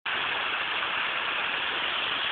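Steady rush of a small waterfall cascading over rocks.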